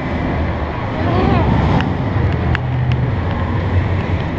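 Steady low rumble of a handheld camera carried at a walk, with faint voices in the background and a few light clicks.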